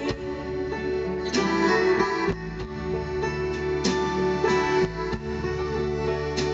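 A live band plays an instrumental passage with no voice: sustained notes under chords struck about once a second.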